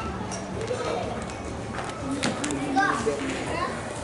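Chatter of many guests' voices overlapping in a large hall, children's voices among them, with a few sharp clicks about halfway through.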